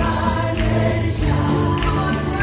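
A worship team of four women and a man singing a gospel song together in harmony into microphones, over musical accompaniment.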